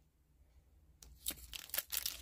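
About a second of near silence, then the foil wrapper of a trading card booster pack crinkling and rustling in the hands in quick crackles.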